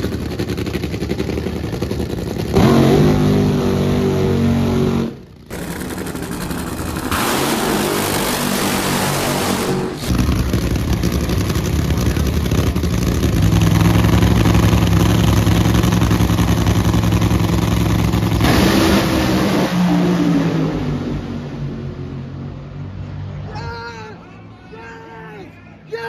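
Nitro Funny Car engines, supercharged Hemi V8s burning nitromethane, revving and running loudly at the starting line. About three-quarters of the way through they launch into a pass, the pitch sweeping up and then falling as the cars race away, and the sound fades near the end.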